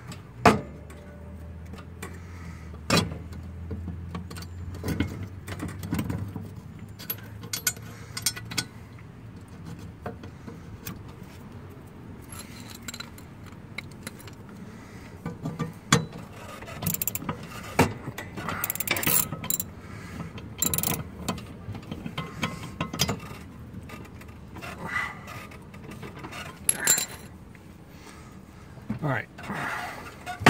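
Hand-tool work on a riding mower's steel deck: irregular metal clicks, knocks and clinks with short runs of ratchet clicking as the cutting blade is seated and its bolt tightened, busiest about two-thirds of the way through.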